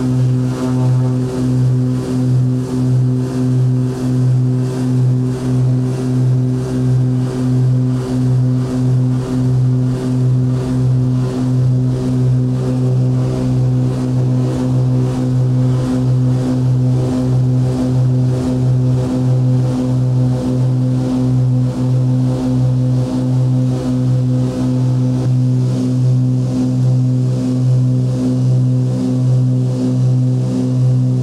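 A propeller aircraft's engines and propellers running at high power, heard inside the cabin during the takeoff and climb. It is a loud, steady drone with a fast, even throb.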